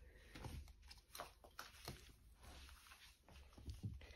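Near silence with faint, scattered scuffs and rustles of kittens play-fighting on fabric bedding.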